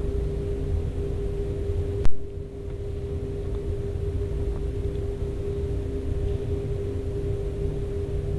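Steady machinery hum with a constant mid-pitched tone over a low rumble, broken by a single sharp click about two seconds in.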